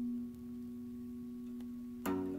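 A single held, ringing note from a jazz big-band recording sustains alone and slowly fades, dipping slightly about a third of a second in.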